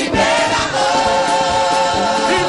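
Gospel choir singing held notes with vibrato over music with a low beat.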